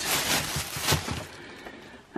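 Packaging rustling and crackling as it is handled and broken up, with a sharper crackle about a second in, then fading.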